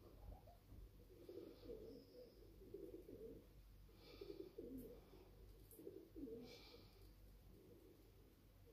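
Very faint scrape of a straight razor with a replaceable blade cutting through lather and stubble, three short strokes a couple of seconds apart. Under it, a low cooing from a bird comes and goes.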